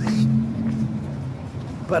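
Street traffic: a motor vehicle's engine running with a steady low hum that fades about a second in, over general street noise.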